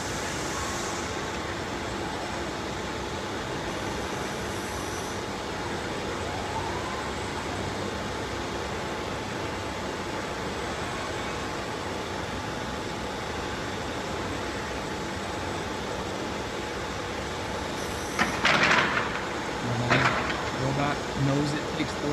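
Steady exhibition-hall background noise: machinery and ventilation running, with a faint hum. About 18 seconds in comes a loud hissing or clattering burst lasting about a second, and a shorter one about 2 seconds later, followed by voices.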